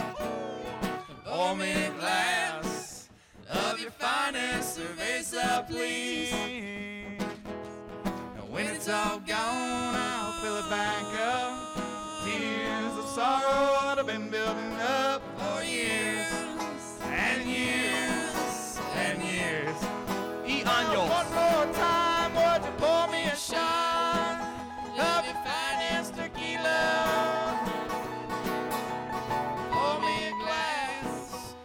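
Live bluegrass band playing on banjo, mandolin and acoustic guitar, with voices singing along.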